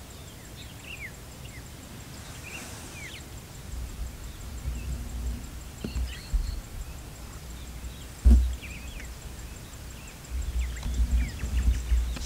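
Small birds chirping in short, scattered calls over a low, uneven rumble, with a single sharp thump about eight seconds in.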